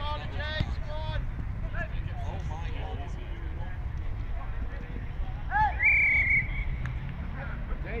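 Players shouting during an outdoor football match, over a steady low rumble of wind on the microphone. One loud, high call rings out about six seconds in.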